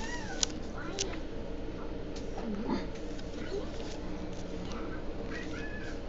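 Short, high, pitched calls from a pet animal, a few times, with sharp clicks from trading cards and plastic card holders being handled, the loudest click about half a second in, over a steady low hum.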